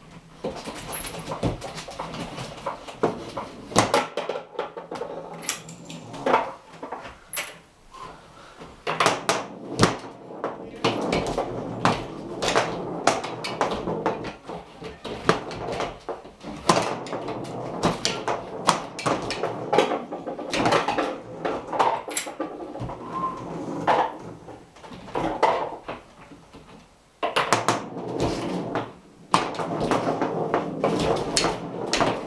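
Foosball in play: the ball cracking off the plastic men and the table's walls, with the rods sliding and rattling and the men clattering as they are jerked and spun. The knocks come fast and irregular, some much louder than others.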